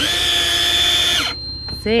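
Electric deep-drop fishing reel's motor whining steadily as it winds line in, then winding down with a falling pitch and stopping about a second and a quarter in.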